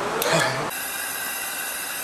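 A man's voice trailing off, then, after a sudden change about two-thirds of a second in, a steady workshop background hum with several constant high whining tones.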